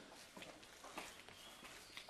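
Faint footsteps on a concrete path: a few soft, irregular steps over near silence.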